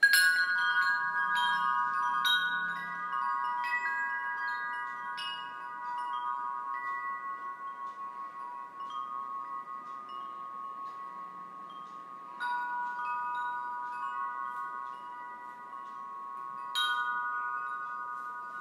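Chimes ringing: light strikes repeat throughout and leave several long, overlapping ringing tones hanging. Fresh, louder strikes come about two-thirds of the way through and again near the end.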